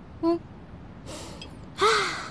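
A person's short voiced 'mm', then a breath drawn in about a second in and a louder gasp with a brief voiced 'ah' near the end.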